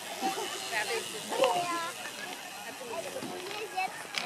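Indistinct voices and chatter of people around a BMX start hill, over steady outdoor background noise.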